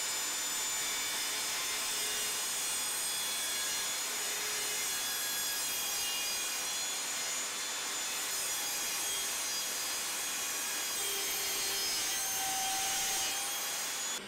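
Evolution Rage 5-S table saw running, its blade cutting a kerf through the wooden base and zero-clearance plate of a crosscut sled as the sled is pushed through; a steady, even sawing noise.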